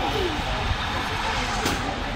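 Steady outdoor street noise with the indistinct chatter of people.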